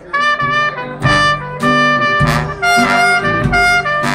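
A traditional New Orleans jazz band starts the instrumental intro of a blues, with trumpet, trombone and clarinet playing together over a low bass line and drum beats. The band comes in suddenly right at the start, loud and sustained.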